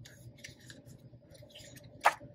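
Faint rustling of paper and vellum planner inserts being slid and shuffled by hand across a desk.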